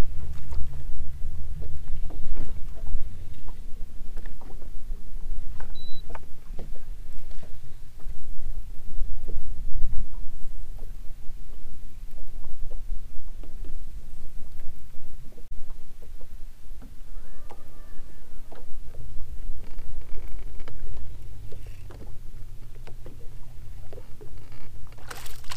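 Uneven low rumble of wind and water around an open bass boat, with scattered light clicks, while the angler works a lure from the front deck. The rumble is heaviest in the first half and eases after the middle.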